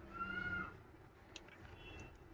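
A single faint cat meow, about half a second long, slightly falling in pitch, followed by a couple of light clicks of plastic parts being handled.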